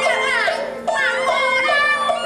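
Teochew opera music: a high melody that slides down in pitch twice, over a steady repeating beat.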